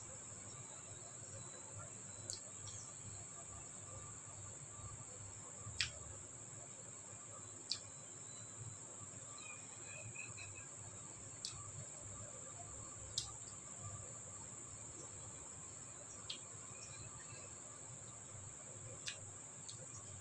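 Quiet eating by hand from a ceramic bowl of soup: about eight short clicks scattered through a steady high-pitched hum and a low background hum.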